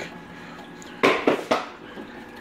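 Three sharp knocks in quick succession about a second in, from the hard plastic hood of a Coralife BioCube aquarium being handled, over a faint steady background.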